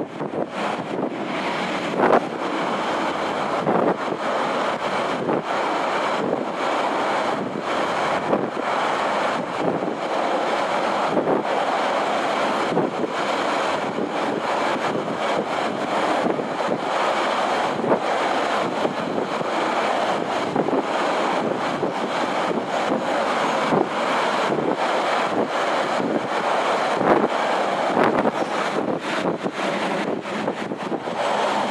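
Steady rush of wind buffeting the microphone and wheels running on the rails, heard from the open-sided viewing carriage of a moving passenger train, with sharp clacks every so often.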